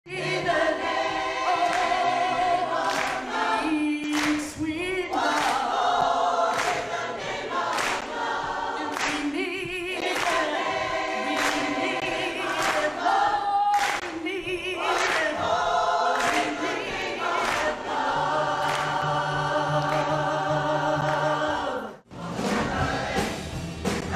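Large mixed choir of men's and women's voices singing gospel music in full harmony, with held chords that waver with vibrato.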